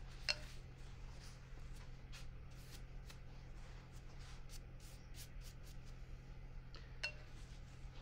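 Faint scratchy brush sounds: a watercolour brush working in a paint pan and stroking across cold-pressed watercolour paper, with a couple of small clicks, over a steady low hum.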